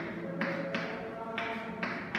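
Chalk tapping and scraping on a blackboard as someone writes, with about four sharp taps as each stroke starts, over a steady pitched hum.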